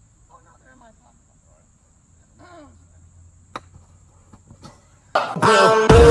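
Faint outdoor quiet with a steady high-pitched insect chirr and a few faint voices, broken by one sharp click about three and a half seconds in as a golf club strikes the ball. Loud music starts suddenly about five seconds in.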